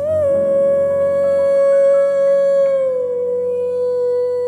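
A woman singing one long held note into a microphone, easing slightly lower in pitch about three seconds in, over soft instrumental accompaniment.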